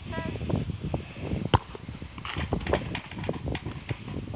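A football struck once in a penalty kick about one and a half seconds in, a single sharp impact, with a fainter knock near the end. Wind buffets the microphone throughout, and children's voices are heard.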